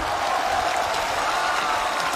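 Steady applause from a theatre audience.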